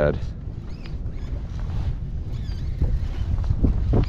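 Wind on the microphone and small waves lapping at a plastic kayak hull make a steady low rumble, with a few light clicks in the second half.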